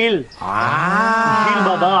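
One long, drawn-out call, held for about a second and a half after a short gap near the start, its pitch rising and falling only slightly.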